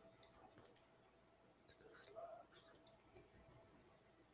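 Near silence, broken by a few faint, scattered clicks of laptop keys being typed.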